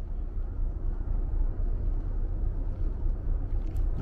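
Outdoor ambience: a steady low rumble of distant city traffic, with no distinct events.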